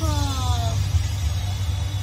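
Steady low rumble of a Nissan Navara pickup's engine heard inside the cabin, with a voice trailing off in a falling call during the first second.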